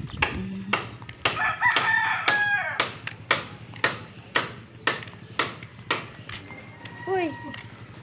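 A rooster crows once, about one and a half seconds in, over steady footsteps on a concrete road at about two steps a second.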